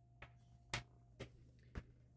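Four faint clicks about half a second apart: a printed circuit board being handled and set down on a work mat.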